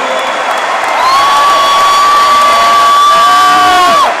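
Large arena crowd cheering and shouting. From about a second in, one voice holds a long high note above the crowd until near the end.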